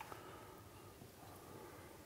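Near silence: faint room tone, with a single tiny tick at the start.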